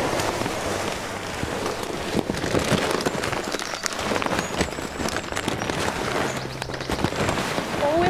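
Coarse horse feed mix poured from a sack into a galvanised metal feed bin: a continuous dense rattle of small pellets and flakes hitting metal and each other.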